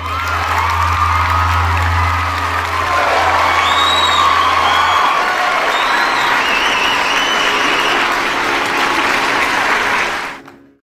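Audience applause after a sitar recital ends, a full house clapping steadily, with a few cheers on top. A low hum underneath stops about halfway through.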